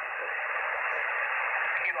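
Steady hiss of shortwave band noise through an Icom IC-R75 receiver on lower sideband, an open channel with no station transmitting. A voice comes through near the end.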